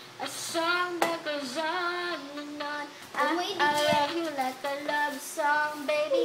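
A young girl singing, holding notes that slide up and down in pitch, in several phrases with short breaks between them.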